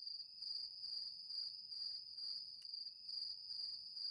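Crickets chirping: a steady high trill that swells about twice a second.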